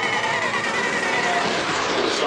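A loud, dense wash of competition cheer routine music blended with an arena crowd cheering, with a high wavering tone held through the first part.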